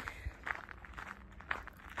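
Quiet footsteps of a person walking, a few separate steps.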